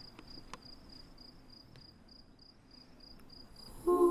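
An insect chirping in an even rhythm, about three short high chirps a second, with a few faint clicks. A sustained music chord comes in just before the end.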